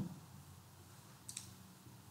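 A single short computer mouse click about a second in, over faint low room hum.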